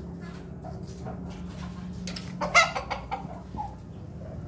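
Rooster calling: soft scattered clucks, with one loud, short pitched squawk about two and a half seconds in and a softer call shortly after.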